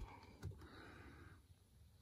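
Near silence: room tone, with one faint short noise about half a second in.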